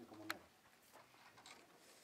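Near silence, broken just after the start by one short faint pitched call and a single click.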